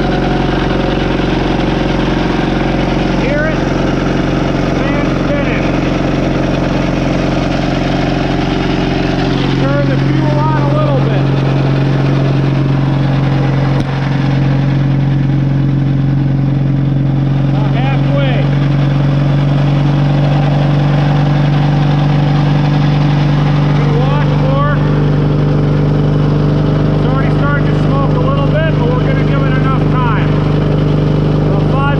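1942 Caterpillar D2 engine running steadily during its pony-engine starting procedure. About ten seconds in, its note changes and a strong low hum sets in and holds.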